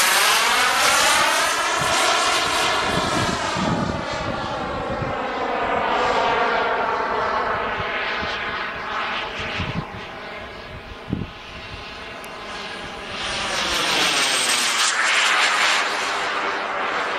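A small propeller aircraft flying overhead with a steady engine drone whose pitch glides, dropping just at the start, rising over the next couple of seconds, and dipping and rising again near the end as the plane passes and turns. The sound fades somewhat in the middle, then grows louder again.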